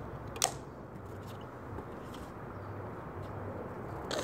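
A single sharp click about half a second in: an aluminium soda can's pull tab snapped open. After it there is only faint background noise.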